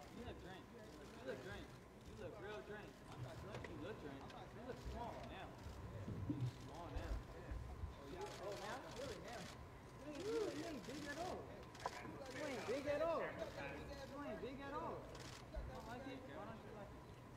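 Indistinct male speech at a fairly low level, a man talking with the words not clear enough to make out.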